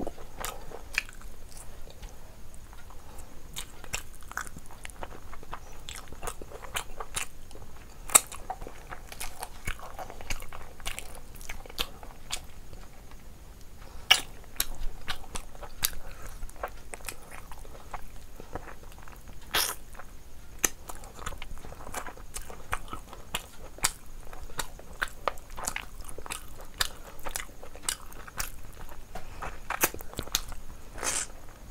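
Close-miked eating sounds: wet chewing and biting of curried meat torn from the bone and eaten by hand, with irregular sharp clicks and crunches and a few louder snaps.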